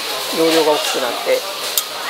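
Busy restaurant ambience: a steady hiss of kitchen noise under talking. A light click near the end as chopsticks are laid on the table.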